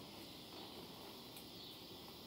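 Faint steady outdoor background hiss with a thin high-pitched band running through it, and a small tick about one and a half seconds in.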